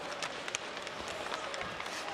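Ice hockey arena ambience: a steady crowd murmur with skates scraping the ice and a few sharp clicks of sticks and puck.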